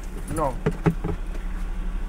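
Car engine running steadily at idle, heard from inside the cabin as a low hum, with a few light clicks about a second in.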